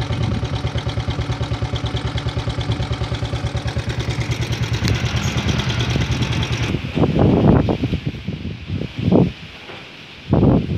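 A motorcycle engine running steadily with an even, rapid putter, which cuts off abruptly about seven seconds in. After that, gusts of wind buffet the microphone.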